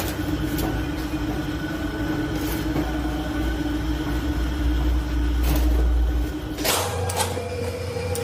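A steady machine hum over a low rumble, with a few light clicks; the rumble cuts off abruptly near the end.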